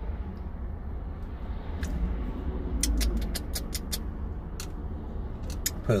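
A steady low rumble in a car cabin, with a quick run of light clicks in the middle and a few more near the end as a plastic utensil spreads salsa on a breakfast sandwich on a plastic tray.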